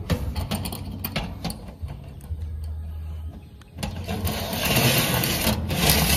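Light clicks and knocks of an aluminium solar mounting rail being handled on a corrugated metal roof, then a louder, even rushing noise for about the last two seconds.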